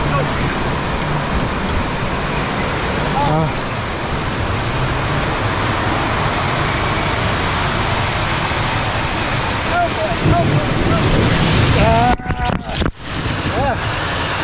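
Rushing water of a raft water slide, with waterfalls pouring alongside and over the raft. Near the end the sound cuts out in brief gaps as water splashes over the microphone, and there are short bits of voice and laughter.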